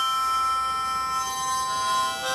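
Harmonica holding a long chord, its top note dropping out about a second in and a new lower note coming in near the end.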